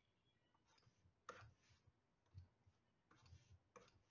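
Very faint taps and short scraping strokes of a stylus on a drawing tablet, about four of them, spaced irregularly.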